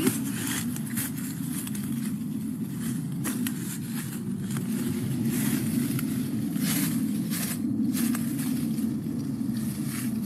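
Hand pruners cutting English ivy vines at the base of a tree: scattered short, crisp snips and rustles of stems and leaves as the vines are cut and pulled, over a steady low background rumble.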